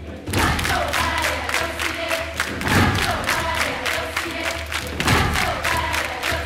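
Large choir breaking suddenly from a held sung chord into a rhythmic chant over steady hand clapping and percussion hits, several strokes a second, in a choral setting of Kraó indigenous chants.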